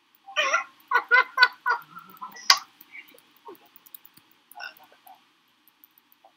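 A man laughing in short, rhythmic bursts of about four a second, broken by a sharp click about two and a half seconds in.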